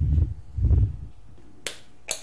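Two dull, low thumps of a wooden mosaic board being shifted and set aside on a table, followed near the end by a single sharp click.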